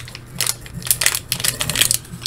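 Plastic candy wrappers crinkling and crackling irregularly as they are handled in the hands.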